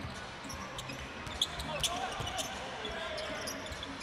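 Basketball game ambience in a gym: a steady crowd murmur with faint distant voices, broken by short sneaker squeaks and ball bounces from play on the court.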